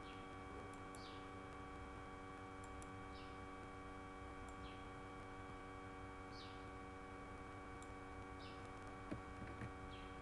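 Faint steady electrical hum of a recording setup, with a few sharp mouse clicks near the end.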